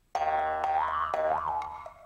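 Cartoon station-ident sound effect: one springy 'boing'-like pitched note that sets in sharply, wobbles up in pitch twice and fades away over about two seconds.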